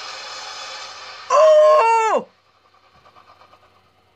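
A steady, droning score, then a loud monster roar from the film trailer about a second in. The roar lasts about a second, holds its pitch and then falls away at the end, and it is followed by a much quieter stretch.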